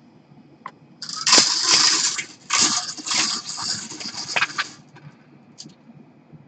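Wire bingo cage being spun by hand, its numbered balls rattling and clattering inside. It turns for about four seconds with a short break partway through, to draw a number.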